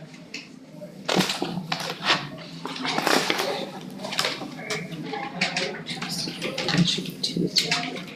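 Paper rustling and sheets being handled, with soft, indistinct murmuring voices, starting about a second in.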